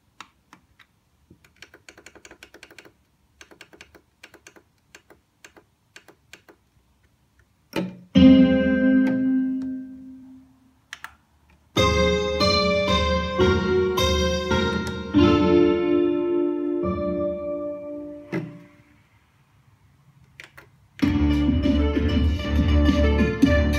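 Roland Juno-G synthesizer patches playing from its sequencer. After several seconds of faint clicks, a loud synth chord sounds about eight seconds in and fades away. Sustained synth chords and notes follow from about twelve to eighteen seconds, and the music starts again near the end.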